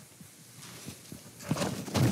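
A few soft knocks and rustles as a person sits down on a bar stool and settles, growing louder and busier near the end.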